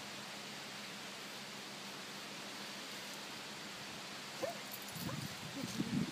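A German shepherd puppy gives a short whimper about four and a half seconds in, over a steady outdoor hiss. Irregular rustling and soft thumps follow near the end.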